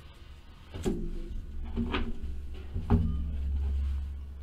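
Cardboard trading-card boxes being handled and set down, with three sharp knocks about a second apart over a low handling rumble.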